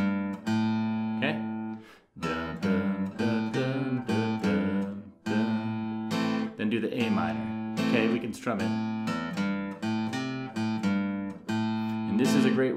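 Acoustic guitar playing a short single-note blues fill in A minor on the two bass strings: open to third fret on the low E string, open to third fret on the A string, back to the open A, back to the G on the low E string, ending on the open A. The fill is played over several times, with short breaks about two seconds in and again about five seconds in.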